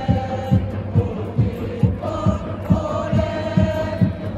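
Football supporters' drum beating a steady pulse about twice a second under a crowd chanting in unison, the chant getting stronger about halfway through.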